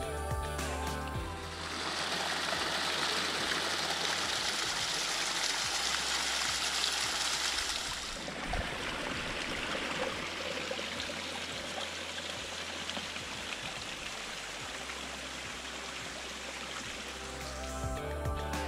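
Small mountain stream cascading over mossy rocks: a steady rush of water, louder in the first half and somewhat quieter from about halfway through. Background music fades out in the first second or so and comes back right at the end.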